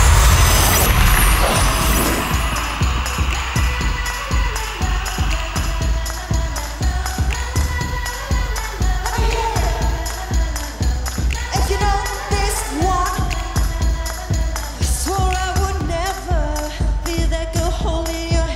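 Live pop song through the arena sound system: a loud opening swell that fades over the first few seconds, then a steady electronic dance beat, with a female lead vocal coming in about halfway.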